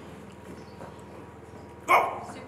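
A single short, sharp animal call, bark-like, comes suddenly near the end over a quiet background.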